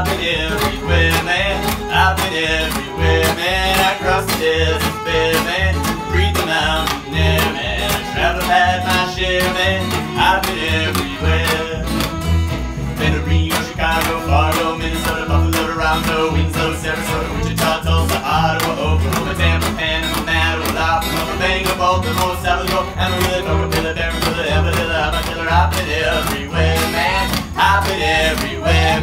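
Instrumental break by an acoustic string trio in a country-bluegrass style: bowed fiddle carrying the melody over strummed acoustic guitar, with an upright bass plucking a steady beat.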